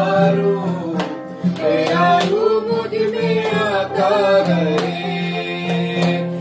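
A man and a woman singing a Hindi-Urdu Christian worship song together, accompanied by strummed acoustic guitar with a steady beat about twice a second.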